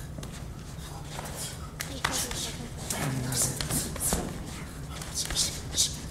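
Full-contact karate sparring: punches and blows slapping against cotton gis and bodies in quick flurries, with short, sharp hissing exhalations and shuffling bare feet on the mat.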